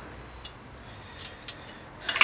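A few light metallic clicks and clinks of small steel hub parts being handled and set down: one about half a second in, then two more a second later.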